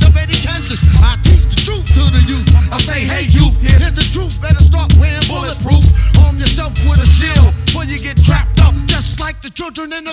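Hip hop track: rapping over a heavy, pulsing bass beat. The bass drops out shortly before the end as the track winds down.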